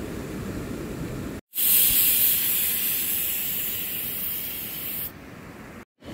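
A loud, steady hiss that starts abruptly about one and a half seconds in, slowly fades, and drops away about five seconds in. Before it, a lower rumbling noise.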